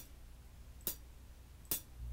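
Two short closed hi-hat hits, about a second apart, each a note of an HQ Rock Kit sample previewed in FL Studio's piano roll as it is placed, over a faint low hum.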